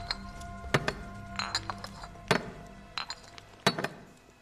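Glass bottles clinking against each other and on a tile floor as they are taken out of a bag: about five sharp, ringing clinks spaced through the few seconds, over a low, sustained music drone.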